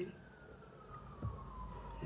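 Faint siren wailing with a slow falling pitch, and one soft knock about a second in.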